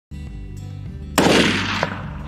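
A single gunshot about a second in: one sharp crack with a fading echo, a shot that strikes the deer. Background music plays under it.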